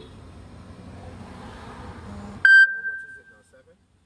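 Low steady background noise, then about two and a half seconds in a single loud electronic ding that fades away over about a second; the background noise drops out with it.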